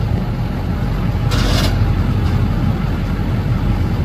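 A heavy engine running steadily with a low rumble, with a short hiss about a second and a half in.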